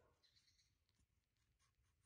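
Faint scraping of a kitchen knife cutting the skin off a green mango, in a series of short strokes.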